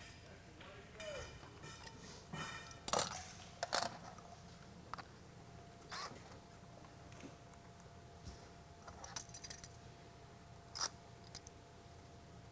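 Screws and metal door hardware being handled: scattered light metallic clicks and jingling, with a few sharp knocks, the loudest about three and four seconds in.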